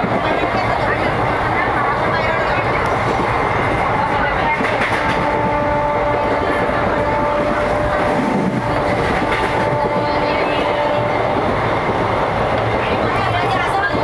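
Steady running noise inside a moving Indian Railways passenger coach: the carriage rumbling and rattling over the track, with a faint steady hum.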